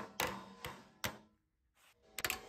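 Soft-faced mallet hammering a lip of galvanized sheet steel over the edge of a 2x4 used as a makeshift brake: about four sharp knocks, each ringing off briefly, in the first second, then a pause.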